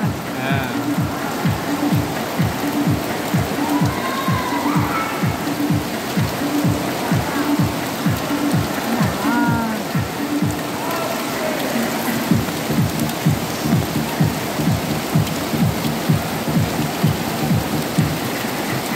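Heavy rain falling steadily on a circus tent and its wet ring floor, with a low beat of background music repeating about twice a second underneath.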